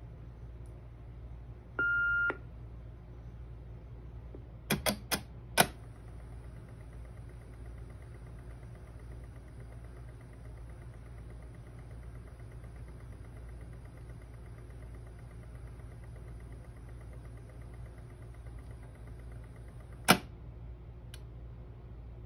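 Panasonic EASA-PHONE KX-T1505 cassette answering machine resetting after a call: a short beep, then four quick clicks of its tape mechanism, a faint steady high whine of the tape transport running for about fourteen seconds, and a loud clunk as it stops, over a low hum.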